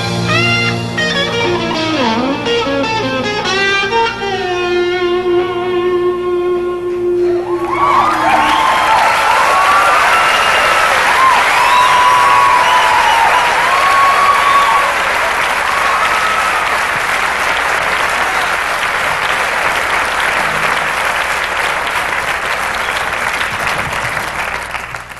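A live band ends a song with electric guitar lines and a held final note. About seven seconds in, the audience breaks into applause and cheering, which go on to the end.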